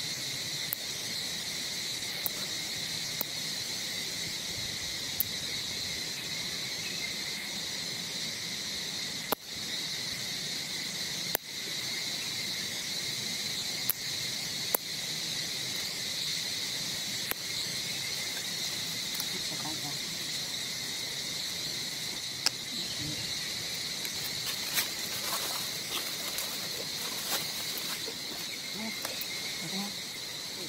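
Continuous insect chorus in the surrounding forest, a steady high-pitched drone, with scattered faint clicks.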